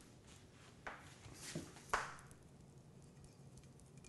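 Quiet room tone with three faint, short taps or clicks in the first two seconds.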